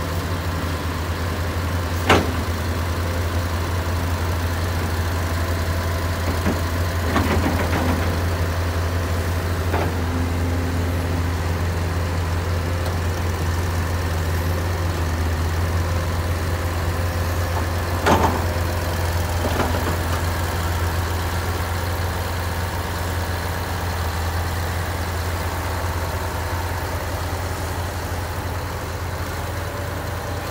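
Heavy diesel engines of trucks and a crawler excavator idling steadily with a deep, even note. A sharp knock about two seconds in and another around eighteen seconds stand out above it.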